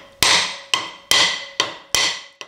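Hammer blows driving a tight-fitting steel-backed bush into the bore of a milling vice's end boss: five sharp strikes about half a second apart, each with a short metallic ring. The bush is going in hard, an interference fit that needed a heavier hammer.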